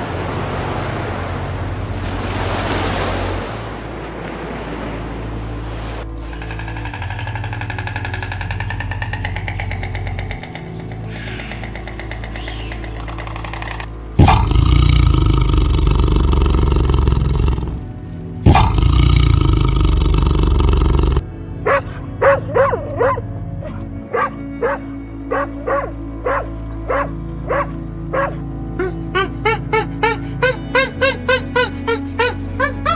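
Background music throughout, with animal sounds over it. Tiger growls come twice, loud and each a few seconds long, about halfway through. Then a chimpanzee calls in a run of short hoots that come faster near the end.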